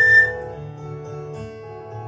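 A concert flute holds a high, loud note that ends about a third of a second in. The instrumental accompaniment plays on more quietly after it.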